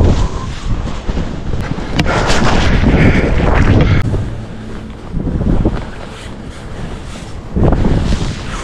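Wind buffeting an action camera's microphone as skis run fast through deep powder snow, a noisy, gusting rumble. There is a sharp knock about two seconds in.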